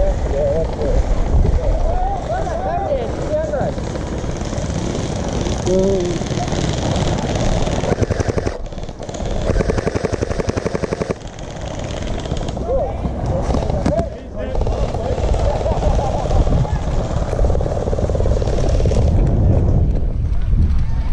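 An electric gel blaster firing a full-auto burst of about two seconds, a fast, even rattle of shots, about nine seconds in, over a steady low rumble, with shouting voices at a distance before and after.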